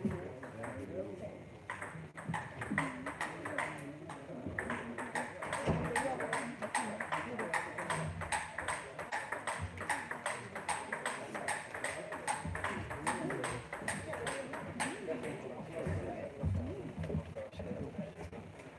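Table tennis ball clicking back and forth between bats and table in a long, steady exchange of quick, even strikes, which stops about fifteen seconds in.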